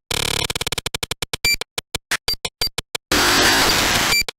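Breakcore electronic music: sharply chopped, stuttering hits cut apart by dead silences, opening on a fast buzzing roll. About three seconds in comes a loud burst of harsh noise that lasts about a second.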